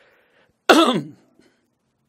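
A man coughs once, a short, sudden burst a little past halfway in.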